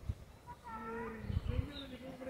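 A drawn-out, voice-like call held at a fairly steady pitch, starting under a second in. Low thumps of wind or handling on the microphone come at the start and in the middle.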